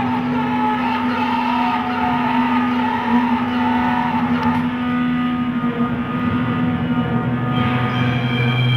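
Psychedelic rock band playing live: a droning instrumental passage with one steady low tone held under wavering higher tones. The sound shifts near the end as new held notes come in.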